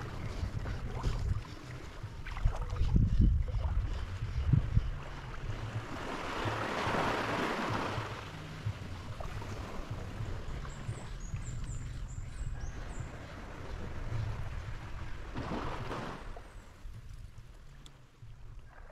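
Wind rumbling on the microphone over a wash of shallow seawater, with a louder swell of hissing water noise about a third of the way in and another shorter one near the end.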